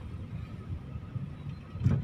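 Low, steady rumble of a car being driven, heard from inside its cabin, with a short knock near the end.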